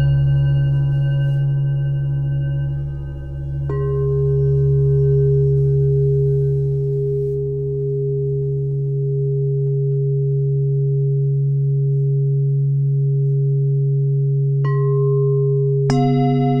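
Ambient meditation music: steady sustained drone tones like singing bowls, with a struck bell-like note ringing out about four seconds in and another near the end, where the chord changes.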